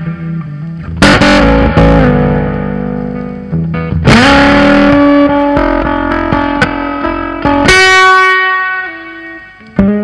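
Semi-hollow electric guitar played through a pedalboard of effects in a slow blues jam: chords and single notes picked and left to ring. A string is bent upward about four seconds in, and a held note is struck near the end and fades away.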